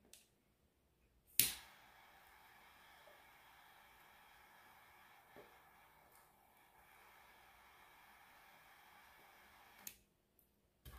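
A torch lighter clicks alight about a second and a half in, then its flame gives a faint steady hiss while lighting a cigar, cutting off just before the end.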